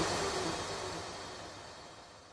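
The end of a pop song fading out, its final sound dying away steadily into silence.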